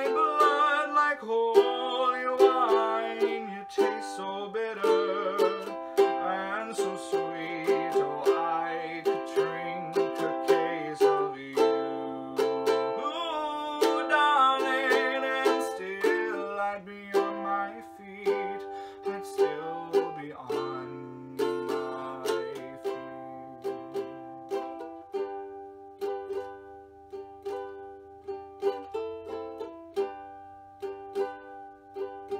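Ukulele playing a slow instrumental passage of strummed and picked chords, thinning out and growing softer in the last few seconds.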